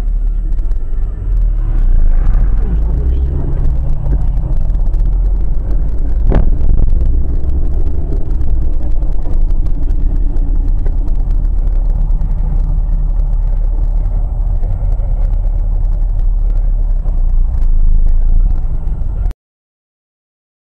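Driving noise inside a car picked up by a dashcam: a steady low rumble of engine and road. There is a single sharp click about six seconds in, and the sound cuts off suddenly near the end.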